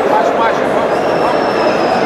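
Indoor arena crowd din: many voices talking and shouting at once, with no single voice standing out. About halfway through, a thin, steady high-pitched tone comes in and holds.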